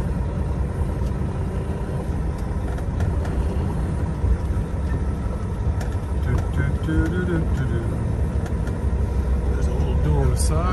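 Semi-truck diesel engine running under light load as the truck drives slowly, a steady low rumble heard from inside the cab.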